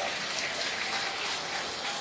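A large congregation applauding in a dense, even wash of clapping.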